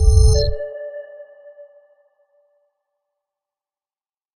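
Electronic audio-logo sting: a deep bass rumble cuts off about half a second in under a bright, pinging chime, which rings on and fades away by about two seconds.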